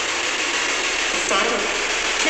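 Spirit box sweeping through radio stations: a steady, chopped-up hiss of radio static. About a second and a half in, a short voice-like snatch comes through, taken as the words "killed her".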